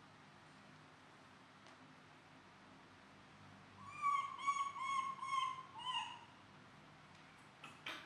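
Baby monkey calling: a run of five short, even, high-pitched calls in quick succession about halfway through.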